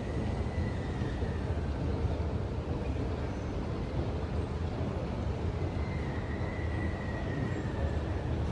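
Escalator running, a steady low rumble with a faint high whine that comes in near the start and again near the end.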